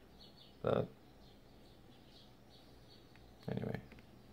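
A man's short hesitation sound, "uh", about a second in, and another brief voiced sound near the end. Between them the room is quiet, with faint, short high-pitched sounds.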